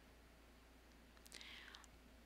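Near silence: room tone with a low hum, and a faint, brief breath at the handheld microphone a little past halfway.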